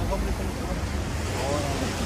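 Steady rush of surf washing up on a sandy beach, with a low rumble underneath and faint voices near the end.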